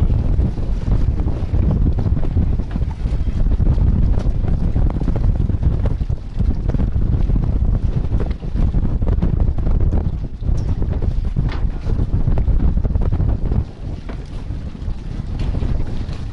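Wind buffeting the camera's microphone: a loud, gusty low rumble that eases briefly near the end.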